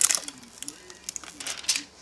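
Clear protective plastic film being peeled off a CPU cooler's glossy top cover, crackling in a quick run of small crinkles that are thickest right at the start.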